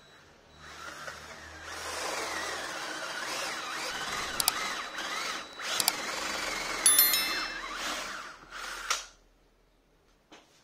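Cordless drill with a countersink bit boring into a hardwood block, the motor running under load for about eight seconds with a brief dip near the middle. A few sharp clicks and a short chatter come about seven seconds in, and the drilling stops abruptly near the end.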